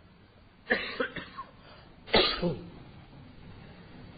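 A man coughing twice, short throaty coughs about a second and a half apart, the second the louder.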